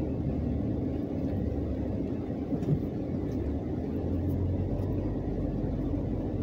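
Steady low rumble of a car's engine and tyres, heard from inside the cabin while driving slowly.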